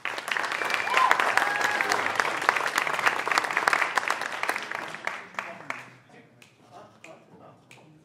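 Audience applauding, with a brief cheer about a second in; the clapping dies away after about five seconds.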